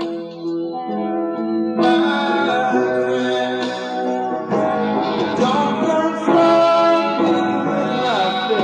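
Live band music: guitar with singing. The sound fills out about two seconds in and again a little past halfway.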